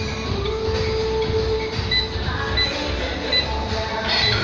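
Exercise bike console beeping three times, short high beeps as its buttons are pressed to set the workout level, over a steady low rumble.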